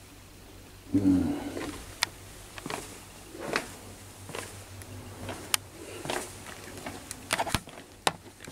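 Footsteps on a hard hospital corridor floor at a steady walking pace, about one step a second, with a few sharp clicks among them. A brief low-pitched sound, louder than the steps, comes about a second in.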